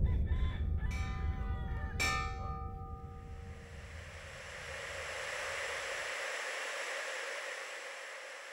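Two struck metallic tones about one and two seconds in, each left ringing, over a low rumble that cuts off about six seconds in. A steady hiss then swells and slowly fades.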